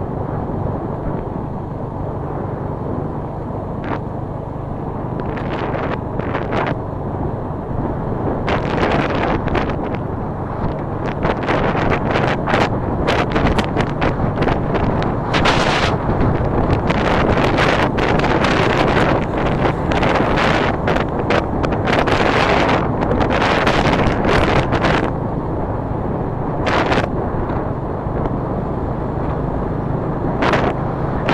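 Motorcycle engine running at a steady cruise, with wind buffeting the microphone in irregular gusts that are heaviest through the middle.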